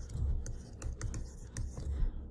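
Stylus writing on a digital writing surface: an irregular run of light clicks and taps, with soft low thumps under them.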